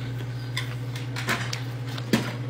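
A few light clicks of dishes and cutlery on a table over a steady low hum.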